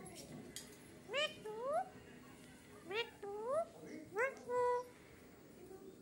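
A caged Alexandrine parakeet gives three pairs of rising two-note calls, each a short upward note followed by a longer one. The final note is held level.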